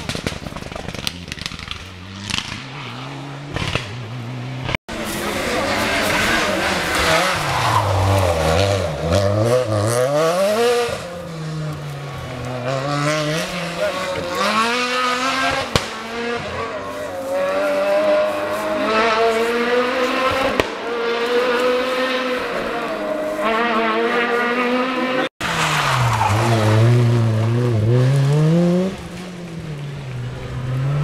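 Rally cars on a tarmac special stage at full throttle, their engines revving hard with the pitch repeatedly climbing and dropping as each car approaches and passes. The sound breaks off abruptly twice, about five seconds in and again near the end, where passes are cut together.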